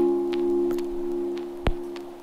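A held keyboard chord sustaining steadily and slowly fading away, with a few faint ticks and a sharp click near the end.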